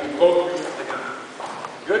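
A performer's voice on stage for a moment, then a few light clicks like shoes stepping on the wooden stage floor, and a man's voice starting up loudly at the very end.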